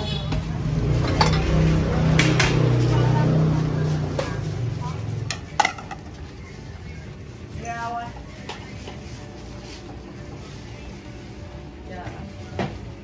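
Street-stall kitchen clatter: ceramic bowls and metal utensils clinking now and then as noodle bowls are assembled. A low engine rumble from the street runs under the first five seconds, then fades, leaving quieter background with faint voices.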